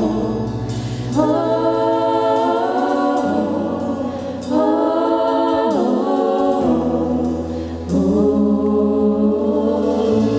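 A choir singing slow, held chords in long phrases over a steady low accompaniment, with a new phrase swelling in about a second in, again near halfway, and about eight seconds in.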